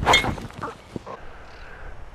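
Golf driver striking a teed ball: one sharp, loud crack at the very start that fades over about half a second.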